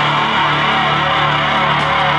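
Loud live rock from an electric guitar and a drum kit, with the guitar strummed hard and a low note held under it, running without a break.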